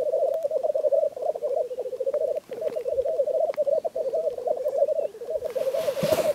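Male black grouse rookooing at a lek: a continuous bubbling, cooing song with only brief breaks. A loud hiss starts near the end.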